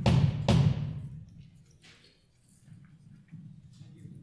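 Loud, deep percussion strikes opening the piece: one still ringing at the start and another about half a second in, each fading over about a second, then only faint scattered taps.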